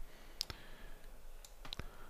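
A few faint, sharp clicks of a computer mouse and keys, about four in all, one about half a second in and a pair near the end, against quiet room tone.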